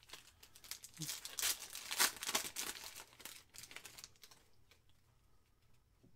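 A foil trading-card pack wrapper crinkling as it is torn open by hand. The crackle is loudest in the first half and dies down after about three seconds.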